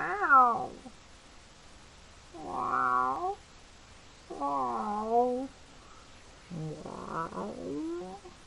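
A young lion giving four drawn-out calls, each about a second long and wavering in pitch, with short quiet gaps between them.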